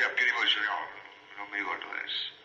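Speech in an old recording with a thin, narrow sound, in short broken phrases.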